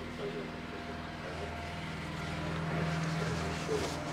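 Steady low machine hum with a few fixed pitches, joined by faint indistinct voices.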